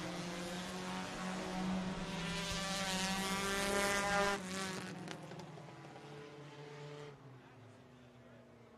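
Front-wheel-drive dirt-track race cars running at speed on a hot lap. The engine note grows louder up to about four seconds in, then drops off and fades away as the cars pass and move off down the track.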